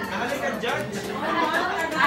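Several people talking over one another: mixed chatter of voices in a room.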